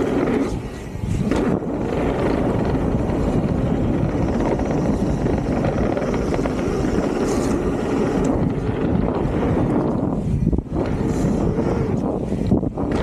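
Wind rushing over the camera microphone and tyres rumbling on a hard-packed dirt trail as a Santa Cruz Megatower mountain bike descends at speed. The noise eases briefly about ten and a half seconds in.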